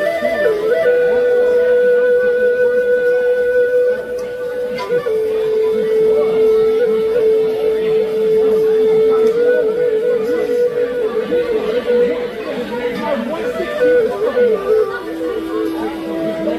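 Native American flute playing a slow melody of long held notes. It steps down to a lower note about five seconds in, climbs back a few seconds later and settles lower near the end, with talk in the background.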